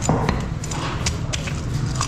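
A large knife chopping through a fish onto a wooden chopping block: a series of sharp knocks, roughly three a second, over a steady background hum.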